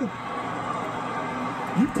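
Football broadcast sound from a television across a room: a short gap in the play-by-play commentary filled with steady background noise, then the commentator's voice coming back near the end.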